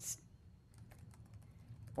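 Faint, irregular light clicks, like someone typing on a computer keyboard, in a lull between speech.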